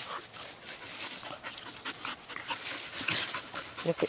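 Two young dogs play-wrestling on dry leaves: panting and short breathy huffs, with scuffling in the leaves.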